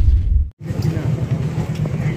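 Steady low outdoor rumble, like traffic or wind on the microphone. It follows a low rumble that cuts off abruptly to a moment of silence about half a second in.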